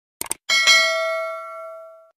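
Subscribe-button animation sound effect: a quick double mouse click, then a bright bell ding that rings on and fades out over about a second and a half.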